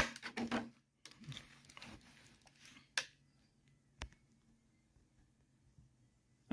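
Light rustling of plastic packaging and small plastic toy pieces being handled, with a few faint clicks in the first two seconds and two sharp clicks about three and four seconds in.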